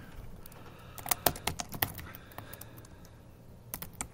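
Typing on a computer keyboard: a quick run of separate key clicks about a second in, a few scattered keystrokes after it, and a couple more just before the end.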